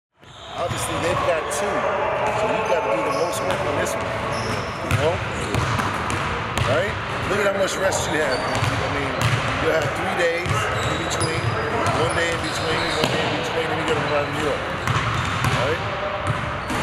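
Basketballs bouncing on a hardwood gym court, mixed with indistinct talking voices.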